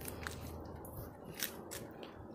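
Quiet background with a steady low hum and a few faint, short clicks.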